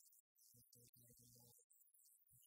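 Near silence: a very faint, choppy feed of scattered low tones and hiss that cuts out completely twice.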